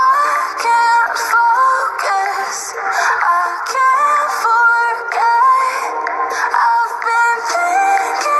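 Background music: a song with a sung melody of held notes stepping from pitch to pitch over an accompaniment, thin-sounding with no bass.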